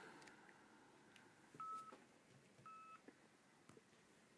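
Near silence on a call line, broken by two short faint electronic beeps of the same pitch, a little over a second apart, like telephone tones.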